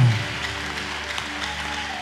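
A held keyboard chord with several steady notes, over light clapping from the congregation.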